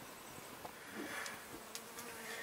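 Faint buzzing of a flying insect, with a couple of light clicks.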